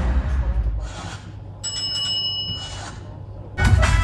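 A film's soundtrack playing over cinema speakers: the production-logo music fades away, a few high ringing tones sound for about a second in the middle, and the music comes back loudly near the end as the title appears.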